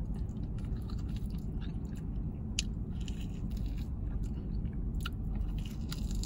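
A person chewing a bite of smoked pork rib that comes cleanly off the bone, with scattered faint wet mouth clicks over a steady low hum.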